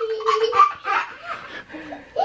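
Laughter, a young child's high-pitched laugh among it, held at first and then breaking into short bursts.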